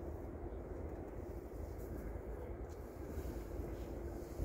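Steady low rumble of distant motorway traffic, with no single vehicle standing out.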